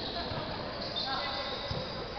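A basketball bouncing a few times on a gym court, with dull thuds under the steady chatter of spectators echoing in a large hall.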